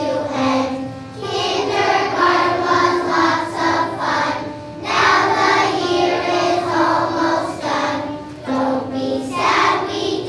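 A class of kindergarten children singing together as a choir, in sung phrases of about three to four seconds with short breaks between them.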